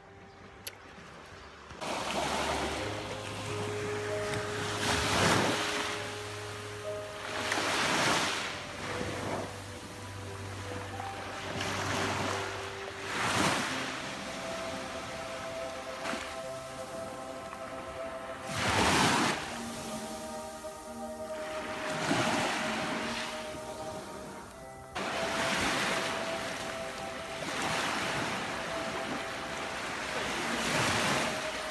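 Small waves washing onto a sandy beach, swelling and fading every few seconds, under soft background music of sustained notes that comes in about two seconds in.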